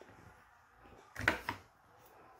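Fabric rustling briefly as it is handled and laid on a cutting mat, a little over a second in, against quiet room tone.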